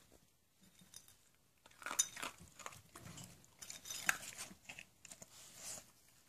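A small bichon-poodle mix dog crunching and chewing dry kibble, a faint irregular run of small crunches and clicks starting about two seconds in.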